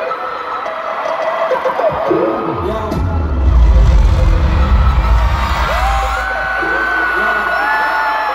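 Large arena crowd screaming and cheering, many high voices rising and falling over each other. About three seconds in a deep, heavy rumble swells up, loudest around the fourth second, and dies away by about six seconds.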